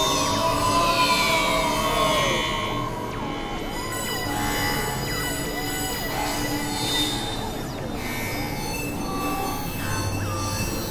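Layered experimental electronic music of drones and squealing tones. Sustained high pitches slide slowly downward in the first few seconds, then give way to many short swooping pitch bends.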